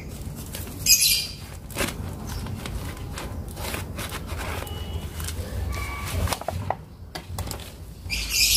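Rustling and scraping of leaves, soil and pot as a potted petunia is worked loose and pulled out by its root ball, with short rustles about one and two seconds in, over a steady low rumble.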